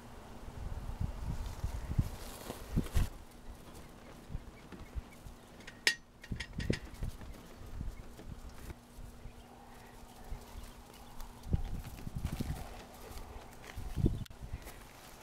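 Irregular low thumps and knocks from a handheld camera being moved and handled, with a few sharp clicks about six seconds in and a faint steady hum underneath.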